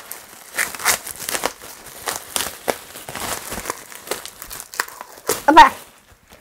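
Wrapping crinkling and rustling in irregular bursts as items are unwrapped and handled from a parcel. A short vocal sound from the woman near the end.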